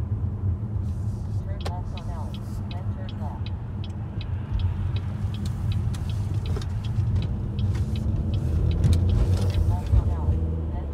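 Steady road and engine rumble heard inside a moving car, with a fast, regular high ticking, about three ticks a second, through most of it.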